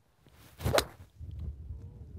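Golf iron swung through a low punch shot: a brief swish of the club ending in one sharp, crisp strike of the ball about three quarters of a second in.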